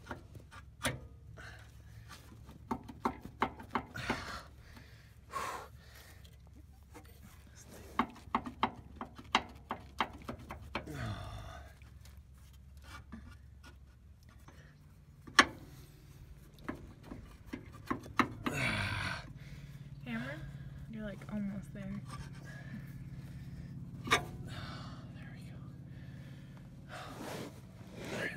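A man panting and breathing hard with effort while he wrestles a seized rubber radius arm bushing off by hand. Scattered clicks and knocks of metal and rubber run through it, with a couple of sharper knocks.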